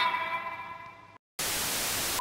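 The last held note of an old TV commercial jingle fading away, then after a brief dead gap a sudden burst of steady television static hiss, the loudest sound, starting a little past halfway.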